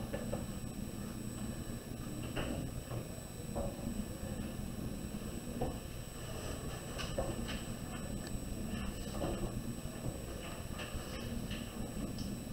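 Pen writing numbers on graph paper: faint, irregular scratches and light taps over a steady low hum.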